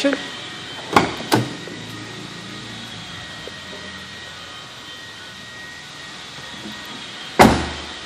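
Steady room hum with a faint high whine. Two sharp knocks come about a second in, and a single loud crack near the end dies away over about half a second.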